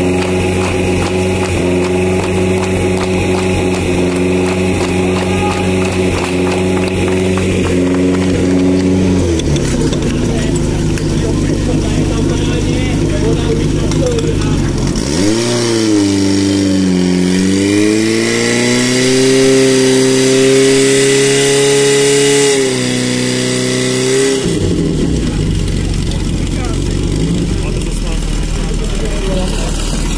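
Portable fire pump engine idling, then revved hard about halfway through and held at high revs for several seconds while it drives water out through the hoses, before dropping back to idle.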